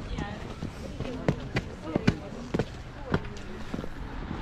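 Footsteps on pavement, a sharp step about every half second, with faint voices between them.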